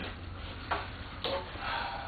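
Two light clicks, about half a second apart, of hands and metal parts being handled at a car door's bare inner frame, with a softer rustle near the end over a steady low hum.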